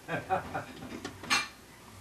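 Faint voices followed by a single sharp clink about a second and a half in.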